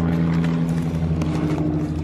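A car engine idling steadily, a constant low hum with no change in pitch.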